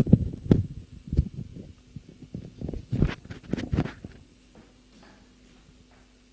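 Microphone handling noise: a run of low thumps and rubbing as the microphone is adjusted, lasting about four seconds, then only a faint steady hum.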